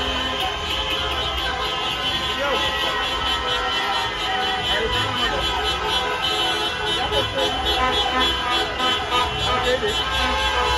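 A street crowd celebrating, with many voices shouting over a constant din of car horns and car engines from a slow-moving convoy.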